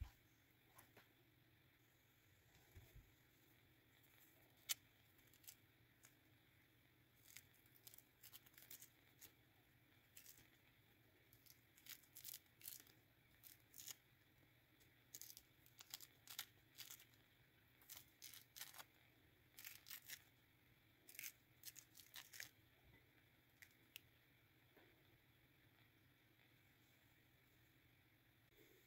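Mandarin orange peel being pulled off by hand: faint, short tearing and crackling sounds in irregular clusters, most of them between about seven and twenty-three seconds in.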